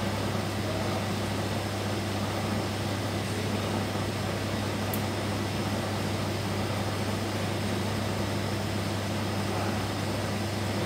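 Steady machine hum of running air-monitoring equipment around a NOx analyzer, with fan and pump noise over a constant low drone, and a faint tick about five seconds in.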